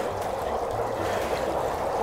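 Dry ice bubbling in tubs of hot water, giving a steady, even fizzing hiss.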